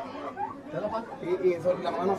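Speech only: several men talking indistinctly over one another.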